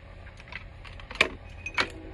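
Handling noise: about five light clicks and clinks of small hard items, the sharpest just after a second in, over a low rumble.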